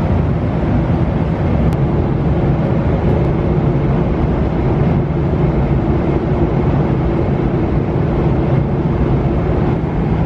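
Steady airliner cabin noise in cruise flight: a constant low roar of engines and airflow that does not change.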